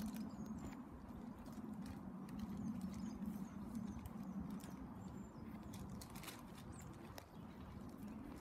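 Quiet garden ambience: a steady low hum with faint, scattered high bird chirps and a few light rustles and ticks.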